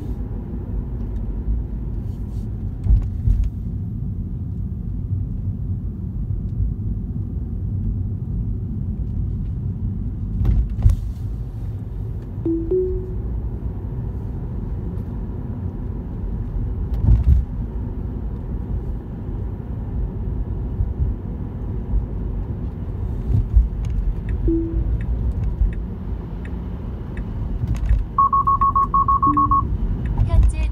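Tyre and road noise inside an electric Tesla's cabin at expressway speed: a steady low rumble with a few thumps from the road surface. Short soft chime tones sound now and then, and near the end comes a rapid run of high beeps, typical of a navigation speed-camera alert.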